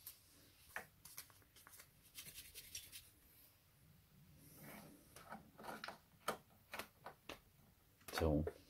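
Quiet, scattered plastic clicks and rubbing as a T-disc is handled and fitted into the open brewing head of a Tassimo pod coffee machine.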